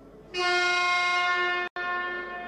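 Basketball arena game horn sounding one long steady tone, starting about a third of a second in, during a timeout. There is a very short break in the sound near the end.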